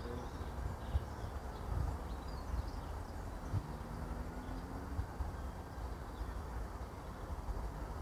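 Quiet outdoor ambience: a low, uneven rumble on the microphone with a few faint bird chirps.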